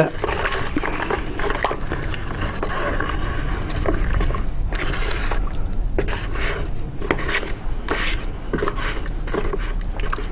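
A plastic spatula stirring wet casting plaster and scraping around the inside of a plastic bucket, in an uneven run of scrapes and small knocks, as the mix is brought to a smooth, creamy, lump-free consistency.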